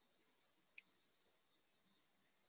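Near silence with a single short, sharp click about a second in.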